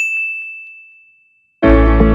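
A single high, bell-like ding, a notification-bell sound effect, that rings out and fades over about a second and a half. Then loud music starts, about a second and a half in.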